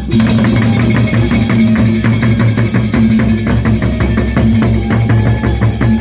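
Large double-headed barrel drums of the Sasak gendang beleq type, beaten in a fast, steady interlocking rhythm, with sustained ringing tones under the strokes.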